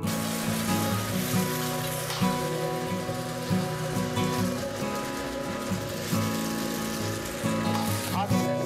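Egg and chopped vegetables sizzling in a hot oiled wok, a steady hiss that sets in abruptly, under background music.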